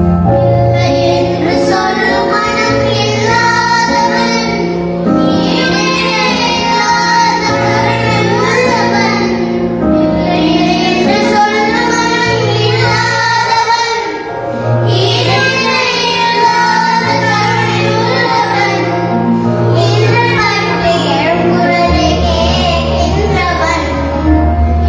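A group of children singing a Tamil medley song together into microphones over instrumental accompaniment with sustained low bass notes.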